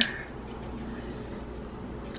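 A single sharp click right at the start, then faint steady room tone in a small kitchen.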